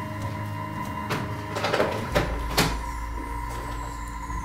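Paper napkin being folded and creased on a tabletop: a few short rustles of paper, about a second apart, over steady background music.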